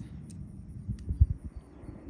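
Wind buffeting the microphone: an uneven low rumble that surges about a second in.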